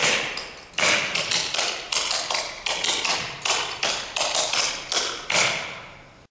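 Clogging shoes' taps striking a wooden dance floor in a quick rhythmic pattern, the Neutron clogging step, several sharp taps a second, each ringing briefly in a large hall. The taps stop near the end.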